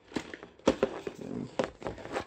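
Handling noise from a small cardboard box being turned over close to the microphone: a string of irregular knocks and rubs.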